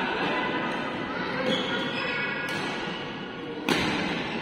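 Players' voices calling out in a reverberant sports hall between rallies, with one sharp smack near the end, the kind a badminton racket makes striking a shuttlecock.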